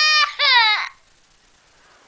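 Toddler wailing in a tantrum: a high-pitched cry held briefly, then a second cry sliding down in pitch that stops about a second in.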